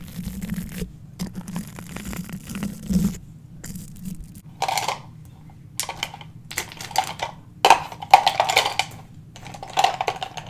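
Close-miked scratchy rustling and clattering handling noise, coming in several irregular bursts from about halfway through, over a quieter first half.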